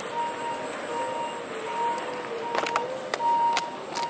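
An electronic beeper sounding a steady repeated single-pitch beep, about one every 0.7 seconds, over hall ambience, with a few sharp clicks in the second half.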